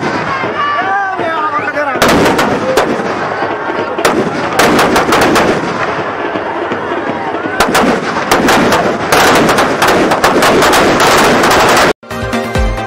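Firecrackers going off as a Ravana effigy burns: rapid strings of sharp bangs and crackles in bursts, thickest in the last four seconds, and they cut off suddenly at the end. Crowd voices are shouting in the first two seconds, before the bangs begin.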